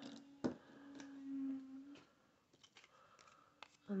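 Faint handling of card pieces and scissors on a glass craft mat: a few light clicks and taps, with a short low hum in the middle.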